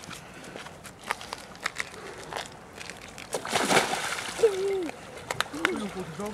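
A person wading slowly into an ice hole in a frozen lake: a few sharp cracks and clicks of ice underfoot, then sloshing water from about three seconds in, with brief voice sounds from the swimmers.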